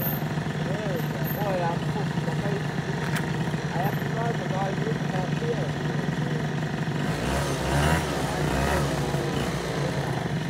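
A steady, low engine hum like an idling vehicle, with a louder rumble swelling about seven seconds in and fading again toward the end.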